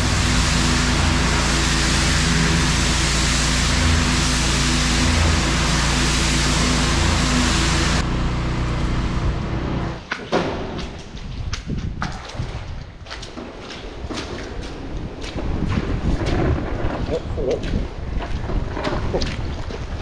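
Pressure washer spraying, a steady rush of water over a steady low machine hum, for about the first ten seconds. Then a wooden-handled squeegee scraping and sloshing muddy water and wet straw across a concrete floor, in irregular scrapes and splashes.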